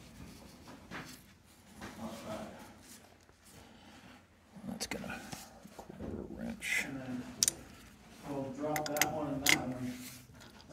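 Sharp metallic clinks and knocks of a wrench and steel hydraulic hose fittings being handled and tightened in a cramped space under a machine. Voices talking in the background grow louder near the end.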